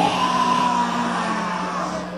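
A long held yell, slightly arched in pitch and fading after about a second and a half, over the steady hum of amplified stage gear between songs.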